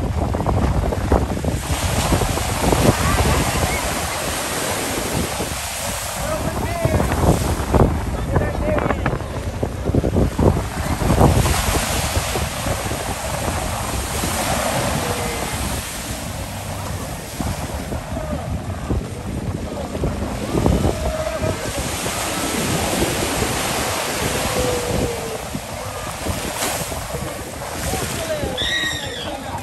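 Ocean surf washing at the shore, rising and falling every few seconds, with wind rumbling on the microphone.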